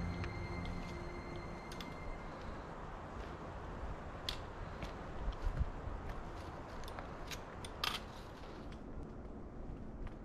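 Background music fading out in the first two seconds, then outdoor ambience with a few scattered sharp clicks from trekking-pole tips and boots on the rocks of a steep trail descent.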